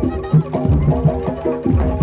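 Jaranan dor gamelan music: tuned metal percussion ringing a repeating figure over loud drum strokes that drop in pitch, in a steady driving rhythm.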